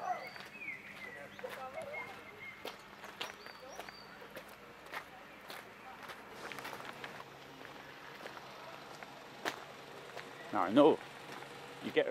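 Footsteps on a gravel path, irregular crunches while walking, with a few high bird calls in the first couple of seconds. A voice speaks briefly near the end.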